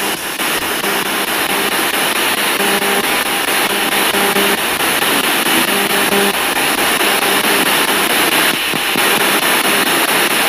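Two-channel spirit box sweeping through radio frequencies: a steady rush of static chopped into rapid fragments, with brief snatches of tone coming and going. The operator listens in it for spirit voices and afterwards says a name was just spoken.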